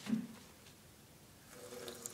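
Bathroom sink tap turned on near the end, water starting to run into the basin with a faint hiss and a steady pipe tone. A short low sound comes right at the start.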